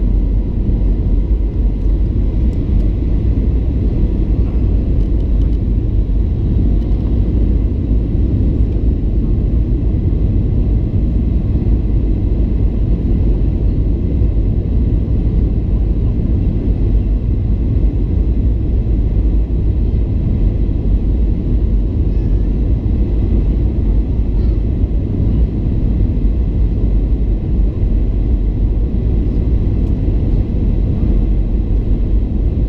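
Steady low rumble of engine and airflow noise heard inside the cabin of a Boeing 737-800 on its approach to land, with its CFM56-7B engines running. The noise holds level throughout, with no distinct events.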